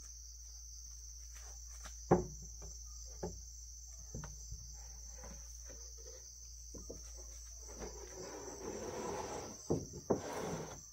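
Steady high drone of an insect chorus, with a sharp loud knock about two seconds in and lighter knocks and taps scattered after it. Near the end comes a scraping rustle as a corrugated roofing sheet is slid across wooden planks.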